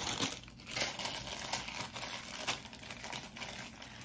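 A plastic smoothie-mix bag crinkling and rustling as it is handled, in irregular crackles.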